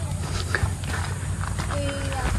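Footsteps of a person walking on a dirt path, about one step every two-thirds of a second, over a low steady rumble.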